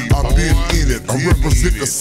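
Chopped-and-screwed hip-hop track: slowed-down rapping over a beat with deep bass.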